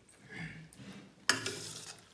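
Steel spoon stirring curd rice in a stainless-steel bowl: soft, wet mixing sounds, then a sharper scrape of the spoon against the bowl just past halfway that fades over about half a second.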